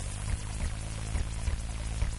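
Experimental electronic noise music built from keyboard sounds, samples and effects pedals: a dense hiss over a steady low drone, cut by sharp hits every half second or so.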